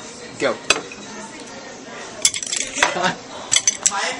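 Wooden chopsticks clacking and scraping against a ceramic plate as they jab at a pea, with one sharp click early on and then a quick run of sharp clicks in the second half.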